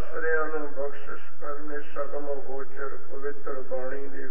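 Speech only: a man talking without pause, sounding slightly muffled.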